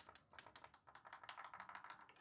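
A steel marble rolling along the Marble Machine X's wooden marble divider rail, clicking faintly and rapidly, about seven clicks a second, as it crosses the channel openings. The clicks stop near the end. The marble is clearing the channels, the sign that the divider's new height modules are set right.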